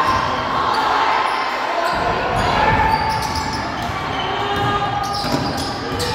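Basketball being dribbled on a hardwood gym floor during live play, mixed with spectators' and players' voices in the gymnasium.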